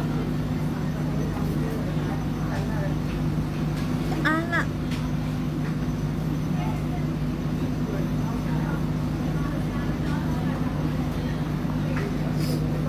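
Indistinct talking over a steady low hum, with one short high chirp about four seconds in.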